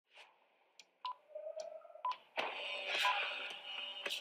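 Two short, high electronic beeps about a second apart, then music begins about two and a half seconds in.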